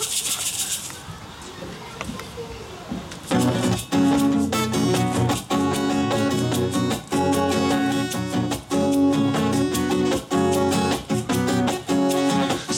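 A hand shaker rattles briefly at the start. Steady strummed acoustic guitar chords begin about three seconds in as the intro of a song, with the shaker keeping time over them.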